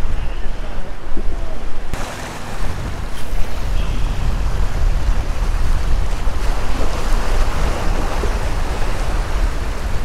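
Surf washing and splashing against granite jetty rocks, with steady wind buffeting the microphone as a low rumble.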